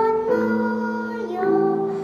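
A young girl singing a children's song over instrumental accompaniment, holding long notes that change pitch twice.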